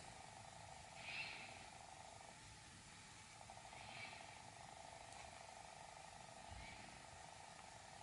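Near silence: faint room tone with a low steady hum and three faint soft rustles of yarn being worked with a crochet hook.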